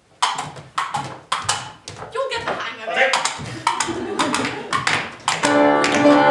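A run of sharp, uneven knocks and taps, about two or three a second, mixed with a few short vocal sounds. Near the end, piano music starts with sustained notes.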